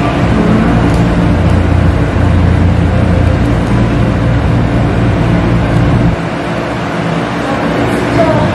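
A loud, steady low rumble with a hum, like a motor or engine running close by; its deepest part drops away about six seconds in.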